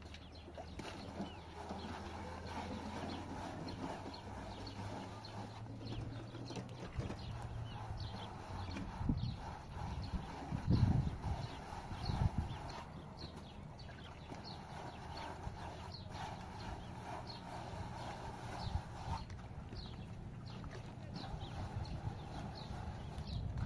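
Wet plaster being spread and smoothed on a wall with a hand float: repeated short scraping strokes, with a few heavier low thumps around the middle.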